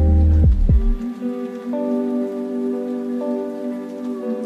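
Lo-fi hip-hop track: deep bass and falling-pitch kick drums drop out about a second in, leaving held chords over a rain-like hiss.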